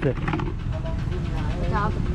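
Busy market ambience: a steady low rumble with short snatches of other people's voices in the background.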